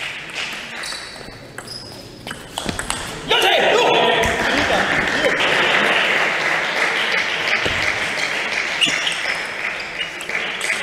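Table tennis ball clicking off bats and table in a rally, then about three seconds in, as the point is won, a sudden burst of shouting and cheering that carries on as sustained applause.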